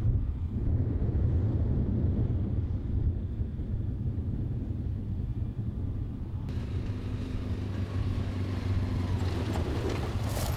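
A steady low engine drone, with wind noise on the microphone; about six and a half seconds in, a brighter hiss joins it.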